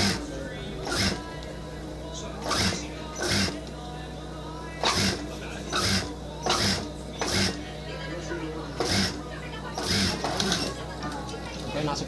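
Industrial lockstitch sewing machine with its motor humming steadily, stitching in short, irregular spurts, about a dozen of them. The start-stop sewing comes from a ruffle being gathered by hand a little at a time as it is sewn onto the fabric.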